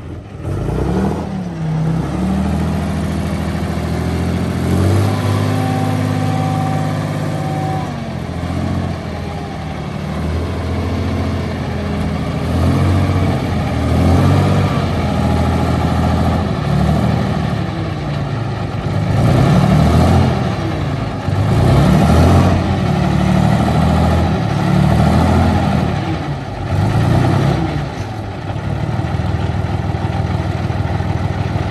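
Straight-piped Rolls-Royce engine of a tracked armoured vehicle running under load as it drives off, revved up and down again and again, with its pitch rising and falling every couple of seconds in the second half.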